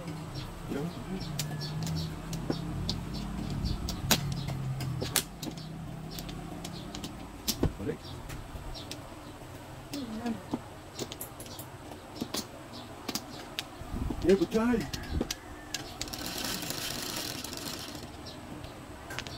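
Mahjong tiles clicking and clacking as players draw, discard and rack them on a mat-covered table: scattered sharp taps, a few louder knocks. A low steady hum runs under the first few seconds.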